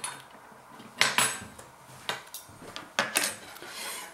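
A plate and cutlery being handled on a kitchen worktop: a few sharp clinks and knocks, in pairs about one and three seconds in, with one between.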